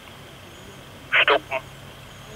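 A short spoken command in a man's voice, narrow and radio-like, about a second in. A faint steady hum lies under it.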